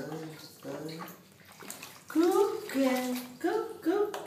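A ten-month-old baby vocalizing in short, high 'ơ' calls, quiet at first and louder in the second half, with bath water sloshing around her.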